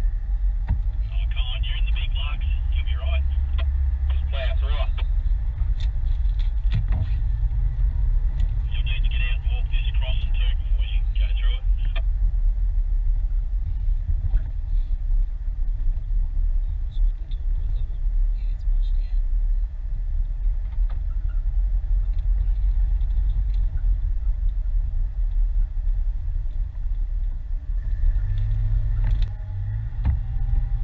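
A four-wheel drive running slowly over a rough gravel and rocky track, with a steady low rumble of engine and tyres. The rumble rises slightly near the end.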